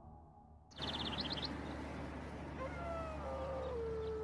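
Outdoor ambience cuts in suddenly under a second in. It carries a quick run of high bird chirps, then, from about two and a half seconds, a long drawn-out animal wail that slides down a little in pitch and then holds steady.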